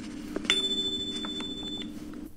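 A single steady high electronic beep, about a second and a third long, that starts and stops abruptly, played from a laptop. It is the cue tone after a recorded dialogue segment in the NAATI CCL exam, signalling the candidate to begin interpreting.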